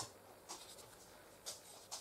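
Faint rubbing strokes of a ball tool sweeping over a thin polymer clay petal on a sponge pad, twice, about half a second and a second and a half in.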